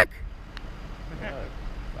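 Quiet outdoor background: a steady low rumble with a couple of faint, brief voices.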